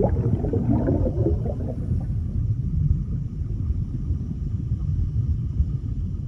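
Underwater sound effect: a deep, steady rumble with bubbling that dies away over the first two seconds while the rumble goes on.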